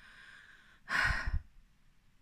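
A woman sighing: a faint breath in, then a louder breath out about a second in.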